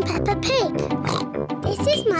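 A cartoon pig character, voiced by a girl, speaking and giving a pig's snort over light theme-tune music.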